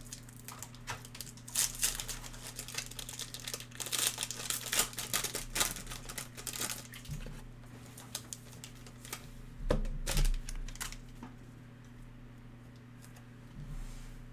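Foil trading-card pack wrapper crinkling as it is torn open and handled by hand, in dense irregular crackles that thin out after about seven seconds, with a couple of dull bumps about ten seconds in. A steady low hum runs underneath.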